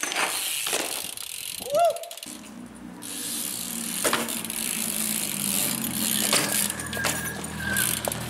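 BMX bike ridden on pavement: tyre rolling noise with a few sharp knocks of wheels landing or striking, and a short squeal near two seconds in. From about two seconds on, a low steady hum runs underneath.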